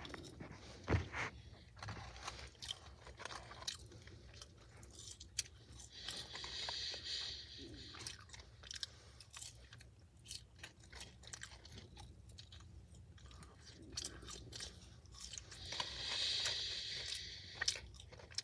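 Close-up chewing and crunching of fast food, with many small crisp mouth clicks. Twice, about a third of the way in and again near the end, a longer rustling spell.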